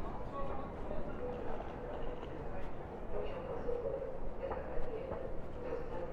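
Railway platform ambience: footsteps on stone paving and the murmur of other travellers' voices over a steady hum.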